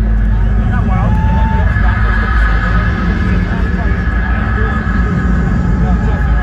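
Large concert crowd chattering and shouting between songs, over a steady low rumble, with a short steady tone about a second in.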